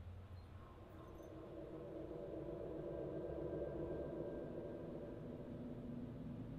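A low sustained drone of several steady tones that swells in over the first second or two and then holds.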